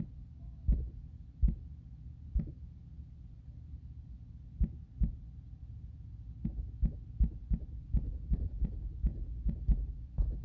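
Handling noise on a handheld phone's microphone: irregular soft low thumps, a few spread out at first, then a quicker run of about two or three a second near the end. A faint steady hum runs underneath.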